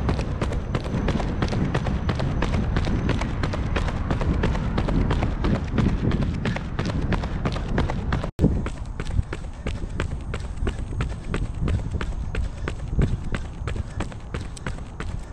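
Running footsteps of Nike Vaporfly Next% 2 shoes striking a concrete sidewalk, an even beat of about three steps a second over a steady low rumble. The sound cuts out for an instant a little past the middle.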